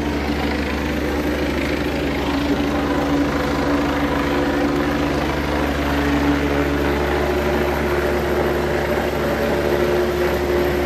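Helicopter flying overhead: a steady, continuous drone of engine and rotor.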